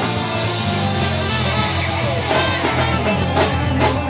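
Live band playing loud rock music, with a singer and drums.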